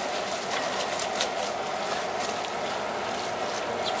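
Browned ground beef with garlic and hot sauce sizzling steadily in a large stainless steel pot, stirred with a wooden spoon, with a few light clicks of the spoon against the pot.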